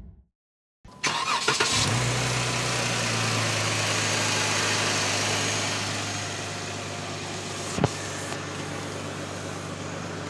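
Jeep Wrangler JK's 3.6-litre Pentastar V6, fitted with an aFe Power cold-air intake, starting about a second in and settling into a steady idle that drops a little in level for the last few seconds. A single short click near the end.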